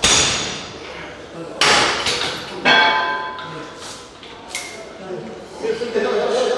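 Cable machine weight stack clanking during reps: several sharp metallic clanks, some of them ringing briefly.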